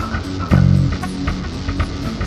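Instrumental band music: guitar and bass over drums, with a strong low chord struck about half a second in. No singing.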